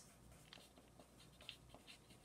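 Faint scratching of handwriting on lined notebook paper, a few short strokes over near silence.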